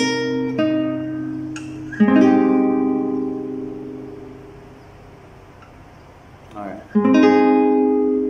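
Nylon-string classical guitar with a capo: a few plucked notes, then a full F-based chord strummed about two seconds in and left to ring and fade, and strummed again near the end.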